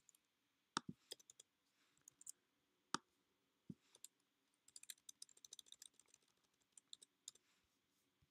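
Faint computer keyboard keystrokes and clicks during code editing: a few single clicks spread out, then a quick run of typing about five seconds in, and a couple more clicks near the end.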